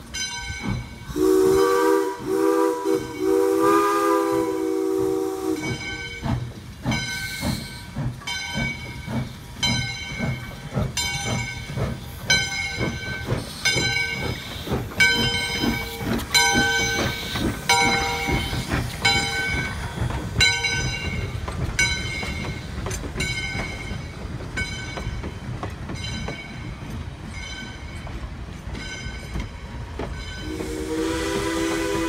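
Steam locomotive No. 40, a 2-8-2, sounds its chime whistle in a chord of several notes for about four seconds, then works past close by with its bell ringing steadily over the beat of its exhaust and running gear. Near the end the coaches roll past.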